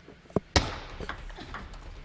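Two sharp clicks of a celluloid-type table tennis ball striking the table or a paddle, a fraction of a second apart, over low hall noise.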